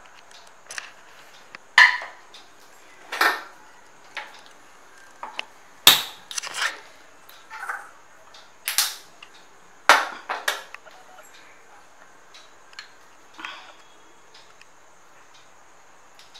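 Kitchenware handled on a stainless-steel gas stove: about a dozen sharp knocks and clicks, spaced irregularly, some with a short metallic ring, as the burner is lit and a small tadka pan is set on the grate.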